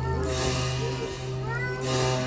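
Tibetan monastic ritual music for a masked cham dance: a low steady drone from long horns under a higher wavering wind tone that slides upward near the end, with bright crashes near the start and again near the end.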